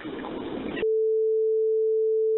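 Faint telephone-line noise, then just under a second in a steady single-pitched beep starts abruptly and holds without a break. It is a redaction tone covering the caller's spoken address in the released 911 recording.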